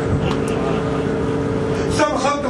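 Steady drone of the cruise boat's engines running, a low rumble under a level hum, with a brief click about half a second in.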